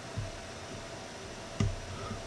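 Quiet room tone: a low steady hiss with a faint hum, and one short spoken word near the end.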